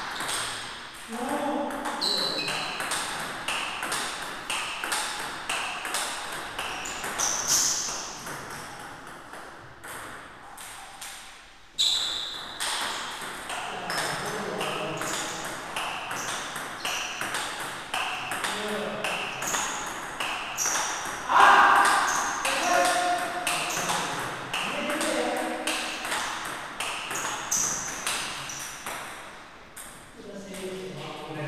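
Table-tennis rally: the plastic ball clicking back and forth off the rubber paddles and the table in a quick, steady rhythm of several hits a second, with a short pause partway through before play picks up again.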